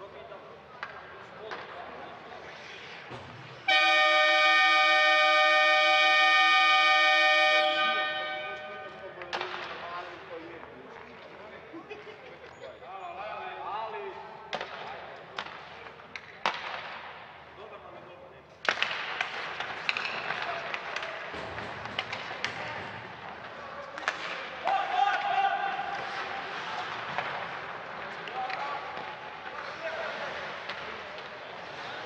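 Ice-rink horn signalling the end of a period as the game clock runs out: one loud, steady, multi-tone blast starting a few seconds in and lasting about four seconds before it dies away.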